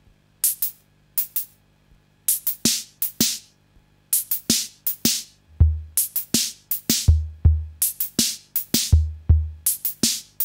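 EKO Computerhythm analog drum machine playing a beat in five (5/4). It starts with sparse crisp high hits, more hits join after about two seconds, and a deep bass drum comes in about halfway through.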